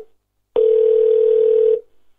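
Telephone line tone over the call audio: one steady mid-pitched beep lasting a little over a second, starting about half a second in.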